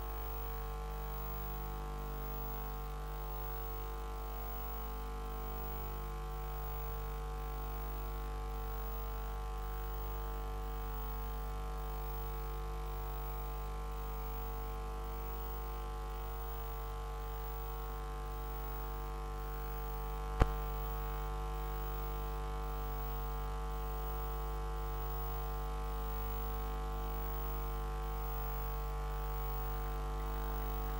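A steady drone of several held tones over a low hum, unchanging throughout, broken once by a single sharp click about twenty seconds in.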